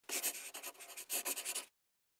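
Scratchy, pen-on-paper-like sound effect of a logo intro: a quick run of scratching strokes in two bursts that stops suddenly after about a second and a half.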